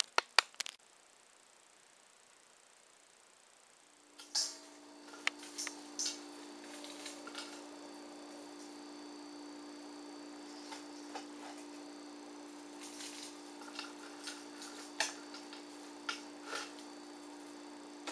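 Dried vegetable bouillon being crumbled by hand into a plastic blender cup standing in a stainless steel bowl: scattered light crackles and taps over a steady low hum. The first few seconds are near silence after a couple of clicks.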